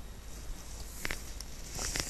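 A quiet pause with a single faint click a little past halfway, then a soft intake of breath near the end.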